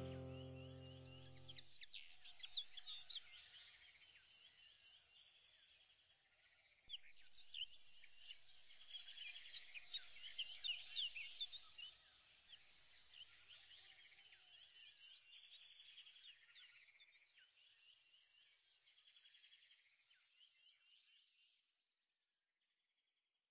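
Faint birdsong: many quick, high chirps from several birds, louder for a few seconds from about seven seconds in, then fading away near the end. A held music chord dies away in the first two seconds.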